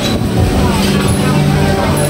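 Busy street ambience: a steady low hum of road traffic with the voices of passers-by.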